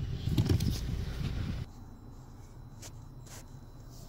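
Low rumbling and rustling handling noise with faint clicks while the camera is moved. About a second and a half in it drops off abruptly to a quiet background, broken by a couple of brief clicks near the end.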